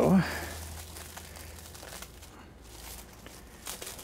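Plastic cling wrap crinkling softly as it is peeled off the rim of a stainless steel mixing bowl.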